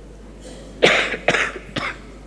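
A person coughing three times in quick succession, the first cough the loudest.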